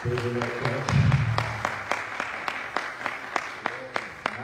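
Hand clapping in a steady rhythm, about three to four claps a second, with a man's voice over the microphone in the first second.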